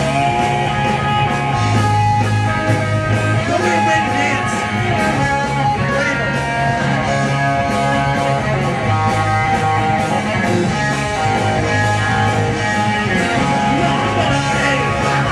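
Live punk rock band playing: electric guitar over bass and drums, with a steady beat and no break.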